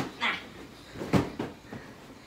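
Pillow-fight hits on a bed: a sharp thump right at the start and another about a second in, with a brief high squeal just after the first.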